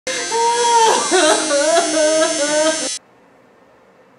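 Electric tattoo machine buzzing steadily while a woman's voice cries out over it, rising and falling in pitch; both cut off abruptly about three seconds in, leaving quiet room tone.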